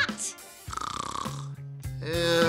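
A man snoring once in a cartoon, a rough, fluttering breath about a second long, over background music.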